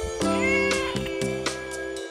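A domestic cat meows once, a short call that rises and falls, about half a second in, over background music with a steady beat.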